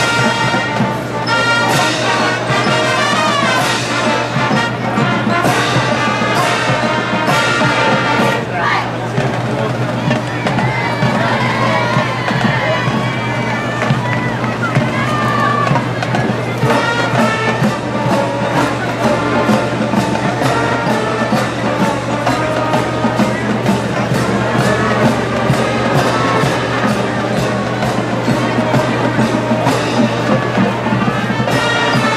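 Collegiate marching band playing on the field: brass instruments carrying the tune over a steady drum beat that stands out more clearly in the second half.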